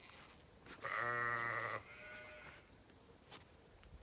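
A Zwartbles ewe bleating once: a single low, wavering baa about a second long, starting about a second in.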